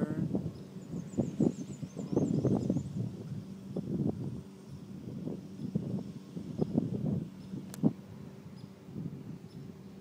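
Riding lawn mower's engine running with a steady hum under uneven, surging noise, and a sharp click a little before the end.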